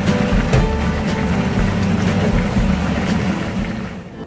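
A pan of Andong-style braised chicken boiling on a gas stove, heard as a steady low rumble, with faint music over it. The rumble cuts off at the end.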